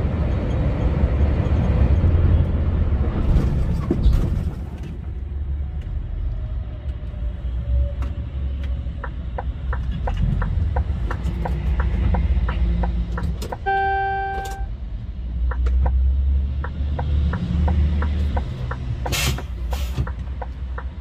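Low, steady rumble of a truck's engine and tyres heard inside the cab while driving on the motorway. From about halfway through, a regular ticking runs at roughly two ticks a second. About two thirds of the way in, a horn tone sounds for about a second.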